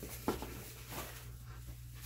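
Faint rustling and handling of a plastic packaging bag being taken off a light pad, with a light tap about a quarter of a second in.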